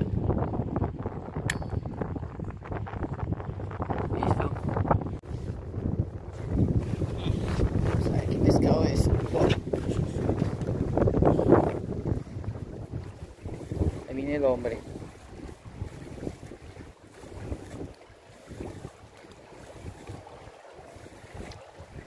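Wind rumbling against the microphone, heavy through the first half and easing off after about twelve seconds, with a few brief faint voices in between.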